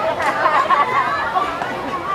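Children's voices chattering, high-pitched and overlapping, with no clear words.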